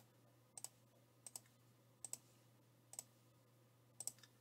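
Faint computer mouse clicks, a sharp double tick of press and release about every three-quarters of a second, five in all, over near-silent room tone.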